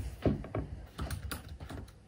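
Typing on a MacBook laptop keyboard: an irregular run of key clicks, opening with one heavier thump.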